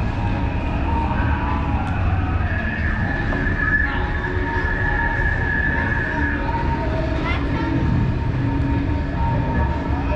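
Steady low rumbling background noise with a few faint sustained tones over it.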